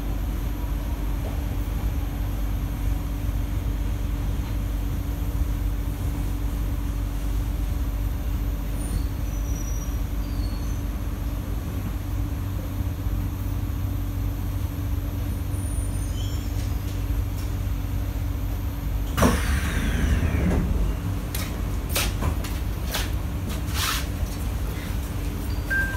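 Interior of a Kawasaki–CSR Sifang C151A metro train: steady running rumble with a constant hum as it slows into a station. About three-quarters of the way through, a whine falls sharply in pitch as the train comes to a stop, followed by a few sharp clicks and knocks as the doors open.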